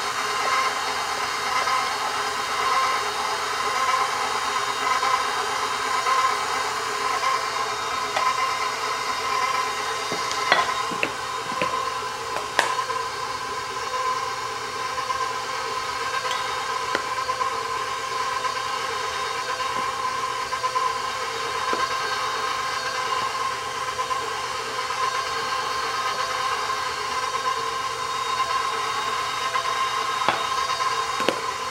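Electric stand mixer's motor running steadily, turning a dough hook through stiff bread dough as flour is added, with a steady whine. A few sharp knocks about ten to thirteen seconds in.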